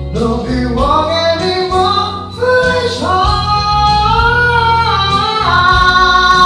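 A man singing a ballad into a microphone in a high voice over instrumental accompaniment, gliding between notes and then holding long, sustained notes that step up higher in the second half.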